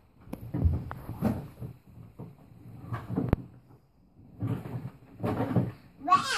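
Hollow plastic knocks, clunks and low rumbling from a toddler's plastic ride-on toy car as it is moved about on the floor, with several sharp clicks in the first three and a half seconds.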